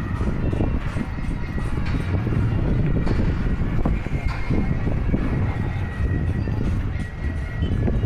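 Loud, steady low rumble of outdoor street noise, with music playing faintly underneath.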